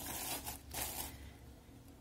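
Yarn and crocheted fabric rustling as hands work a crochet hook: two short scratchy rustles in the first second, then quieter.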